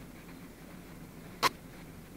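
A faint, steady low hum with a single sharp click about one and a half seconds in.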